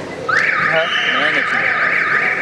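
An electronic timing buzzer sounds one long, loud blast with a wavering pattern, starting about a third of a second in, with a man's voice talking under it.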